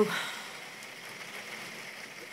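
Rain falling steadily, an even patter with no breaks.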